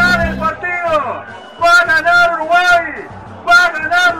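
A radio music jingle ends about half a second in, then a man's voice talks loudly in short separate phrases: a sports radio commentator.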